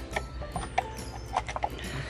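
Irregular light clicks and knocks of a key safe and its key being handled.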